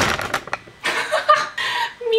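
A sharp burst of noise at the start, then a person's voice making rough, wordless sounds for about a second.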